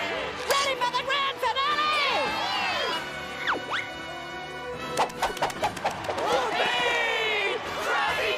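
Cartoon soundtrack: wordless voices over music, then a quick whistle-like glide falling and rising again about three and a half seconds in, followed about a second later by a rapid run of sharp knocks, before the voices return.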